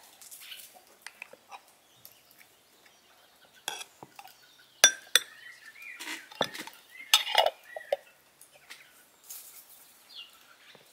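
Metal spoon clinking and scraping against a glass jar and a porcelain bowl as tomato paste is spooned out, with a handful of sharp clinks, the loudest between about four and seven and a half seconds in.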